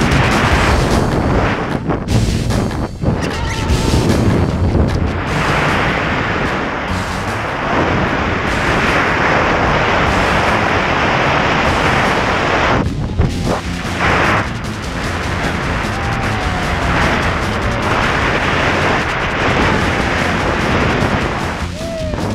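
Loud, steady wind roar buffeting the camera microphone during a tandem skydiving freefall, mixed with a music soundtrack.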